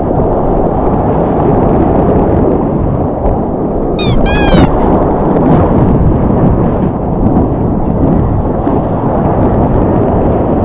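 Loud rushing of water and wind buffeting an action camera on a surfboard as it moves through breaking whitewater. Two short high-pitched cries come about four seconds in.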